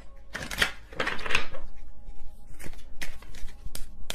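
A deck of tarot cards being shuffled: rustling, riffling noise through the first second and a half, then several short sharp card taps and snaps toward the end.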